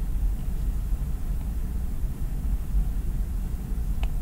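Steady low rumble of background noise with faint hiss, no clear events.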